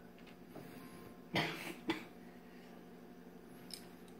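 A person coughing: two short, sharp coughs about half a second apart.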